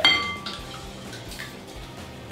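A metal whisk clinks against a glass mixing bowl right at the start, a single bright ringing clink that dies away within about half a second. A couple of fainter knocks follow.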